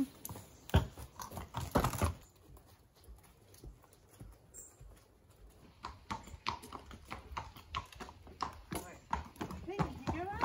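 Horse passing dung onto a concrete yard: two soft thuds, about one and two seconds in. After a quiet stretch comes a run of quick light knocks and scuffs as the horse shifts its hooves on the concrete.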